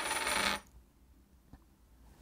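Shaman's hand bells jingling steadily as they are shaken, then stopping abruptly about half a second in. Near silence follows, with one faint click.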